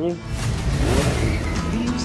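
A loud rushing swell of noise over a deep rumble: a trailer transition sound effect. It begins just after the last word, is strongest about a second in, and fades out as music comes in near the end.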